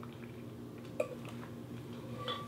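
A person quietly sipping water through the straw of an insulated tumbler, with one short soft click, like a swallow, about a second in.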